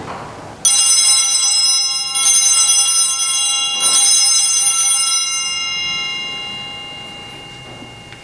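Altar bells rung three times at the elevation of the host during the consecration, each ring renewing a bright, many-toned ring that then fades slowly over several seconds.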